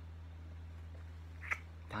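A lollipop being sucked: soft mouth sounds with one short lip smack about one and a half seconds in, over a steady low electrical hum.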